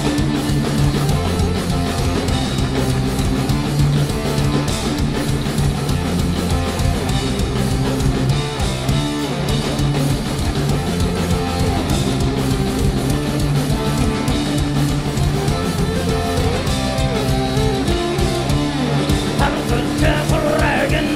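Live folk metal band playing an instrumental passage: electric guitars over drum kit and bass, steady and loud.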